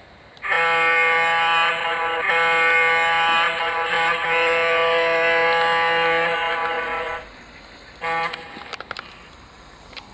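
Diesel-style air horn from the sound system of a garden-scale model switcher locomotive: one long blast of about six seconds with a few brief dips, then a short toot about a second later.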